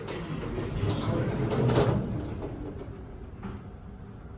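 Schindler passenger lift's doors sliding shut with a rumbling slide that swells to its loudest about two seconds in, then fades, with a light knock near the end as they close. No chime sounds.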